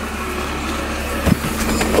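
A car engine idling, heard from inside the taxi's cabin, with a thump about halfway through and a louder knock near the end.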